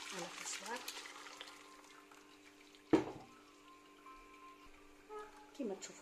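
Broth and cooked vegetables pouring from a pot through a stainless steel mesh strainer into a steel stockpot, splashing in the first second or so. About three seconds in comes one sharp metallic clank with a short ring, as the metal pot and strainer knock together. A steady faint hum sits underneath.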